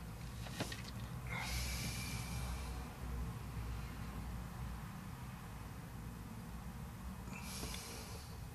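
A man breathing out hard through his nose twice, about a second in and again near the end, with a small click of handled parts just before the first.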